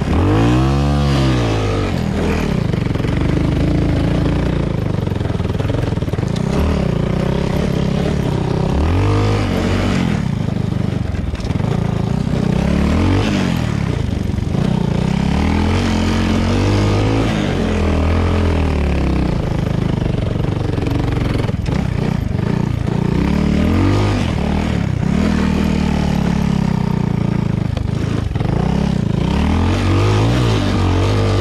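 2017 Honda Grom's single-cylinder 125 cc engine, breathing through an Arrow X-Kone exhaust, being ridden off-road: revs climb and drop back again and again, the engine note rising and falling every few seconds.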